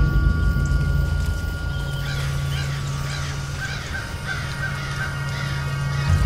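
Eerie music with a steady low drone, over which crows caw in a quick run of calls from about two seconds in until near the end.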